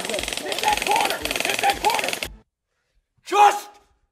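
Men's voices talking for about two seconds, then the sound cuts off abruptly; about a second later one short shouted word from a man, followed by silence.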